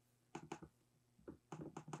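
Laptop touchpad being pressed and clicked: a series of faint, short clicks, a few in the first second and a quicker run near the end.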